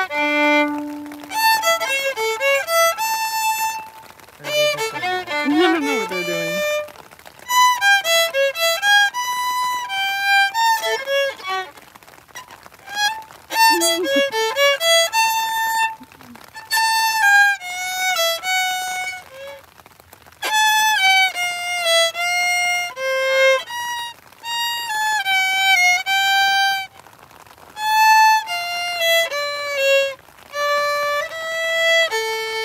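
Solo acoustic violin played with a bow, a melody in phrases with short pauses between them.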